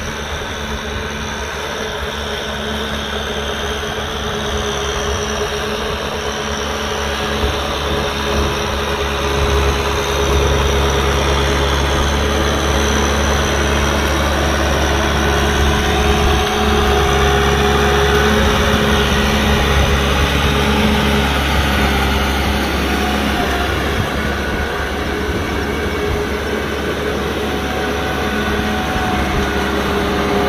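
Kubota M6040 SU tractor's four-cylinder diesel engine running steadily, growing louder over the first ten seconds and then holding.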